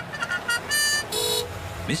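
Cartoon post van's sound effects: a few short high blips, then two short horn toots about a second in.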